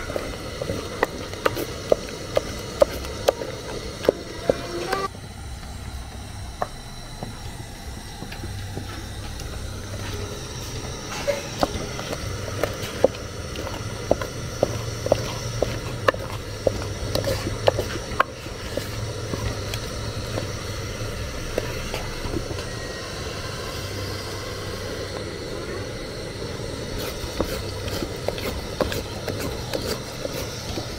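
Wooden fufu turning stick knocking and scraping against the side of an aluminium pot as stiff plantain-and-gari fufu dough is stirred, about two knocks a second in the first few seconds and again midway. A steady low rumble and hiss from the gas burner under the pot runs beneath it.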